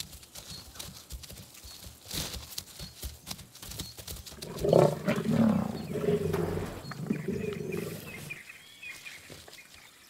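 Lions growling while feeding on a giraffe carcass: a low, rumbling growl starts about four and a half seconds in and lasts some four seconds. Before it come scattered clicks and tearing sounds of meat being eaten.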